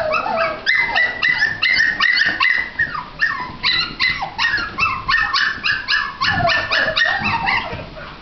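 Shih tzu–bichon (Shichon) puppies yipping and yapping, high-pitched and rapid at about three or four yaps a second, overlapping without pause, with a few falling whines near the end.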